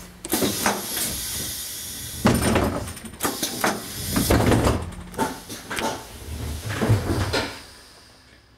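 Pneumatic passenger doors of a Mercedes-Benz O 305 G articulated bus being worked from the dashboard buttons: repeated sharp hisses of compressed air and thumps as the door leaves swing and stop, several times over, fading out near the end.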